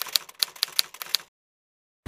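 Typewriter keystroke sound effect: a quick run of about eight sharp key clicks, around six a second, that stops about a second and a quarter in.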